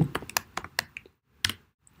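Computer keyboard typing: a quick run of keystrokes over the first second, then a pause and one more keystroke about one and a half seconds in.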